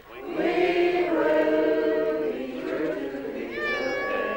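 A congregation singing a slow hymn, several voices holding long notes; near the end a high voice slides up into a held note.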